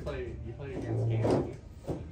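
Indistinct voices talking, with a short scrape or snap of sleeved playing cards being handled near the end.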